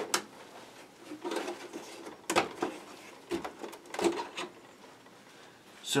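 Plastic parts of a Jabba's Sail Barge toy clicking and rattling as its sails are unclipped and lifted off the deck: a few sharp clicks with handling noise between.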